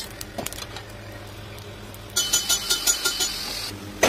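A steady low hum with a few light clicks, then, about halfway in, a rapid metallic rattle with a ringing edge that lasts about a second and a half.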